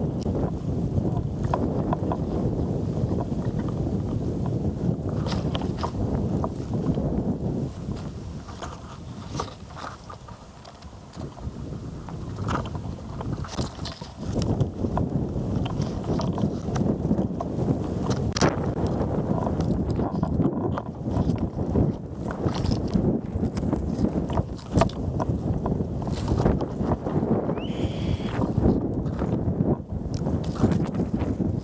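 Wind buffeting an outdoor camera's microphone in gusts, with leaves and twigs ticking and brushing against it. The wind eases for a few seconds near the middle. A single short high chirp comes near the end.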